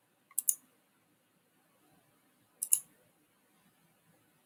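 Computer mouse button clicking twice, about two seconds apart, each a quick pair of sharp clicks, advancing the slide's animations.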